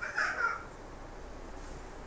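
A single short, harsh bird call near the start, over a low steady background hiss.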